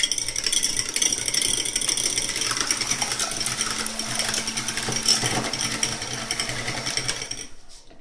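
Electric hand mixer running, its beaters whisking raw eggs in a stainless steel pot with a steady motor whine; it switches off shortly before the end.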